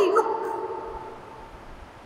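A man's voice drawing out the last word of a question with sliding pitch, ending a fraction of a second in, then fading away over about a second into quiet room tone.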